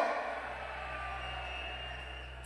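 Drum and bass music from a club sound system cuts out and dies away within the first half-second, leaving a low steady hum with a faint high tone beneath it.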